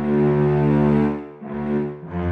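Slow orchestral film-score music on low bowed strings: a long sustained note swells, fades about a second and a half in, and the next note begins.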